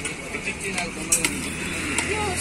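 Two sharp clinks of a steel serving utensil against stainless-steel food pots, close together about a second in, over faint background chatter and a steady low hum.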